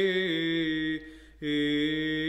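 A man's voice chanting Orthodox liturgical chant in long held notes. The first note steps down slightly, breaks off for a breath about a second in, and then a lower note is held.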